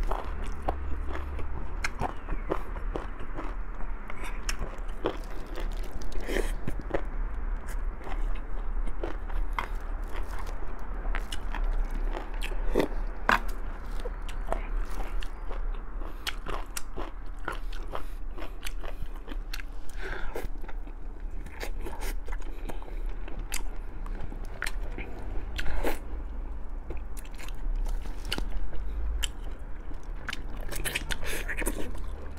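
Close-miked eating sounds: a man chewing and biting boiled pork ribs, with many short wet mouth clicks throughout.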